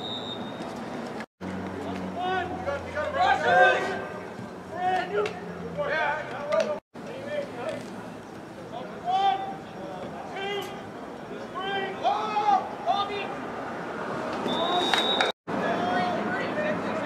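Spectators talking and calling out around the microphone, words indistinct, with a short high whistle blast near the end. The sound drops out completely three times for an instant.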